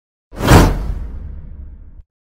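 A whoosh sound effect that swells suddenly about a third of a second in, then trails off into a low rumble.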